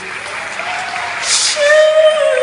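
Audience applauding during a pause in a live song. A held note from the singer and band comes back in near the end.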